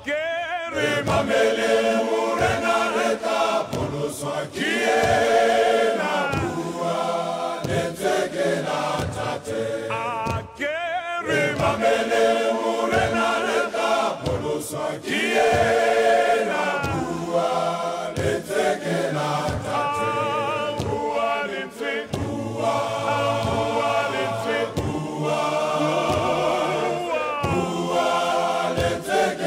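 Large men's choir singing together, many voices at once.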